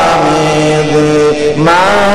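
A man chanting an Arabic devotional poem (syair) in long, drawn-out sung notes. His voice dips briefly and then slides upward near the end as the next line begins.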